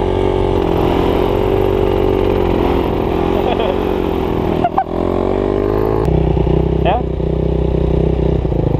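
Dirt bike engine running at steady revs, with a brief dip about five seconds in and a shift in tone about six seconds in, as the bike's rear wheel sits dug into a hole in the soil.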